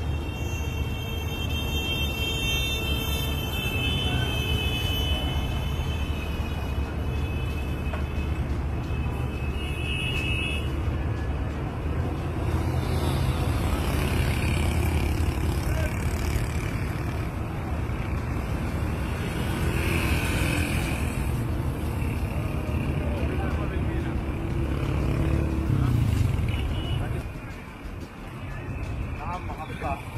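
Street ambience: a steady low rumble of traffic, with indistinct voices.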